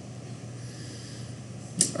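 Pause between words: steady low hum and hiss of room tone, with a short breath-like sound just before speech resumes near the end.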